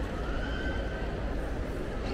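Shopping-mall ambience: a steady low hum with faint distant voices, and a faint drawn-out high sound from about a third of a second in to about a second.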